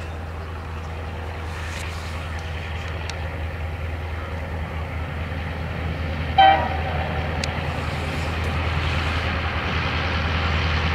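Freight train running past: a steady low rumble that slowly grows louder, with one short horn toot about six and a half seconds in.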